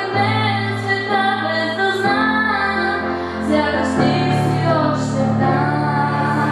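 A young female singer sings a melody solo into a hand-held microphone over an instrumental backing, its bass note changing about every two seconds.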